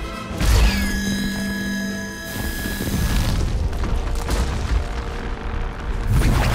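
Action film soundtrack: a deep boom about half a second in, then orchestral score with held chords over a rumbling mix of effects.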